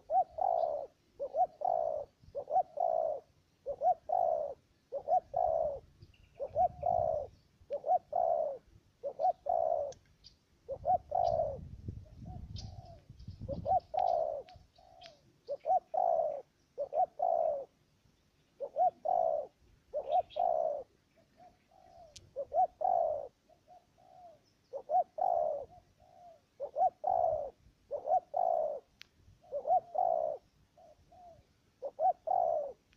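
Spotted dove cooing close by: a long run of low, repeated coos, about one and a half a second, with softer notes between and a few brief pauses.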